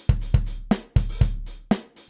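A clean drum break with no effects, played solo and uncompressed: kick, snare and cymbal hits coming three to four times a second.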